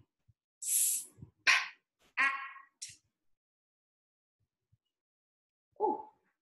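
A woman sounding out the word "spat" one sound at a time, with short gaps between them: a hissed "s", a puffed "p", a short "a" and a crisp "t", followed by a quiet pause and a brief voiced sound near the end.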